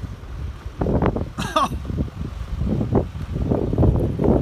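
Irregular low rumble of wind buffeting a phone microphone, with handling knocks as the phone is carried around. A brief vocal sound comes about one and a half seconds in.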